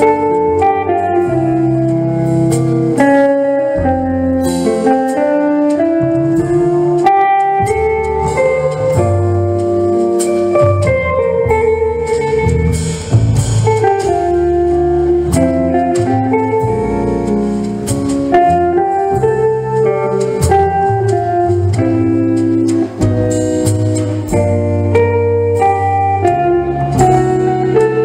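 Live jazz played by a small group, led by electric guitar melody lines over low bass notes, with sharp percussive hits on top.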